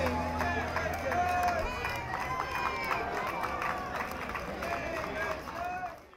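Outdoor crowd of adults and children talking and calling out at once, many voices overlapping. The tail of background music fades out under it in the first two seconds.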